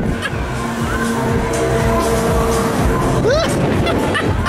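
Fairground thrill ride in motion: music from the ride's sound system over a loud rushing noise, with a rider's brief rising exclamation about three seconds in.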